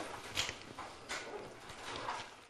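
Scattered knocks and shuffling in a room as a class breaks up, about three separate knocks over two seconds.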